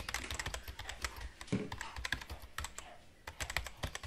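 Rapid, irregular light clicks and taps of a plastic jar and a small box being handled and opened on a kitchen counter.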